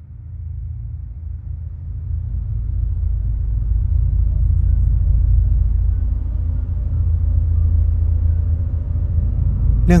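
A deep, low rumble that swells over the first few seconds and then holds steady: a cinematic intro sound effect.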